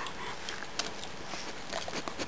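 Nine-day-old German shepherd puppies suckling at their mother's teats, with soft, irregular wet clicks and smacks from their mouths.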